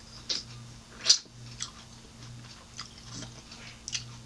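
Close-miked chewing of a seedless grape: a handful of short, wet mouth clicks and smacks at irregular intervals, the loudest about a second in, over a faint steady low hum.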